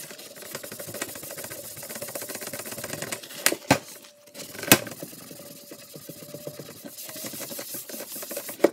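Folded paper towel scrubbing hard and fast over a plastic box, a rapid rasping rub as adhesive residue softened with Goo Gone is wiped off. The rubbing pauses about three and a half seconds in for a few sharp knocks, then resumes.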